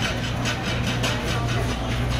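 Supermarket ambience: a steady low hum under a general background din.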